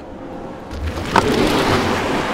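Lucid Air Sapphire, a three-motor electric sedan, launching hard from a standstill and pulling away. A low rumble starts under a second in, then a loud, steady rushing of tyres and air takes over.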